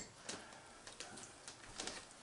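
A few faint, scattered clicks and light knocks of a cat's food dish being handled on a kitchen counter.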